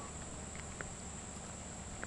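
Faint, steady high-pitched insect chorus, with a couple of faint ticks.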